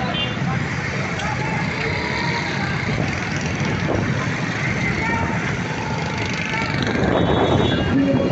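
Busy street traffic: motorcycle and car engines running, with voices of people around. Wind buffets the microphone, growing louder near the end.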